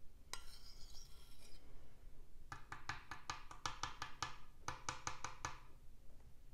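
A metal spoon scraping inside a glass bowl while scooping up a thin makeup paste, followed by a quick run of light clinks of the spoon against the glass over about three seconds.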